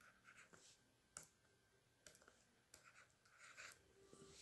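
Near silence, with a few faint taps and scratches of a stylus writing on a tablet.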